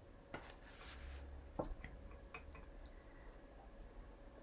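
Faint handling sounds of paper craft work: a few light clicks and taps and a soft rustle, over a low steady hum.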